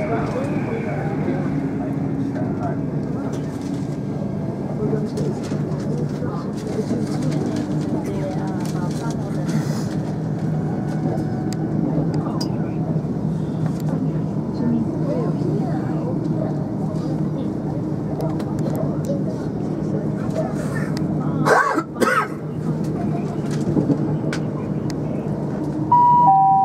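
Steady running noise inside a moving passenger train: a constant low hum with wheel and track rumble, overlaid by indistinct passenger conversation. A brief louder burst breaks in about 21 seconds in.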